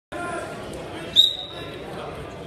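A referee's whistle blown once, about a second in: a single high, steady tone lasting about half a second, over voices echoing in a gym hall.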